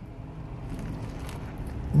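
A bite into a stacked pair of burgers and chewing, heard as faint scattered crackling over a low steady rumble inside a car.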